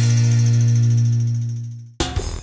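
Closing note of a channel logo jingle: one low, held musical tone with overtones, steady and then fading away near the end.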